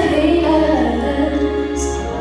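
A female solo singer singing a slow song into a microphone, holding long wavering notes over a low musical accompaniment.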